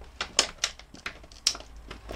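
Stiff clear plastic blister packaging crackling and clicking as it is handled, about six sharp irregular clicks in two seconds.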